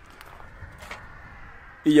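Quiet outdoor ambience with a few faint ticks as a small knife is picked out of a plastic tub. A man's voice comes in near the end.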